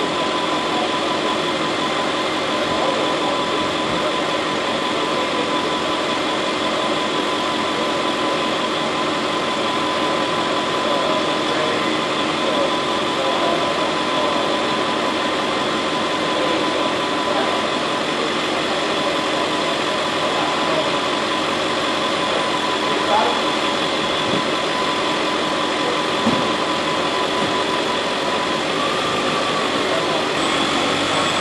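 Ambulance engine idling: a steady, unbroken drone with a constant high tone running through it.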